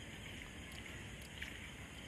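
Faint, steady outdoor background hiss picked up by a phone microphone, with a soft tick about one and a half seconds in.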